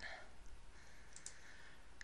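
Quiet room tone with a couple of faint computer mouse clicks a little past a second in.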